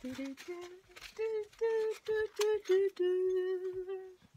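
A woman humming a short tune with no words: a string of short notes that step upward in pitch, then one long held note over the last second.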